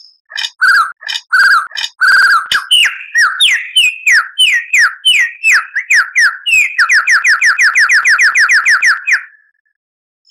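Lyrebird song: a string of loud whistled notes, each sliding down in pitch, breaking into a fast even run of about seven descending notes a second that stops suddenly about a second before the end.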